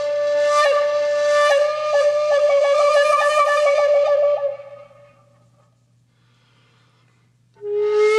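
Solo flute-like wind instrument playing a held note that breaks into a quick fluttering trill, then dies away about halfway through. A new held note comes in near the end and steps up in pitch.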